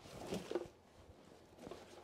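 Rustling of a quilted nylon horse blanket as it is handled and laid down, a brief swish in the first half-second or so, then a couple of soft knocks near the end.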